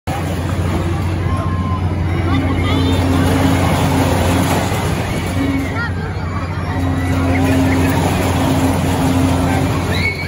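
Fairground din around a Ring of Fire loop ride in motion: a steady low machine hum under crowd babble and scattered voices, with a droning tone that breaks off and comes back several times.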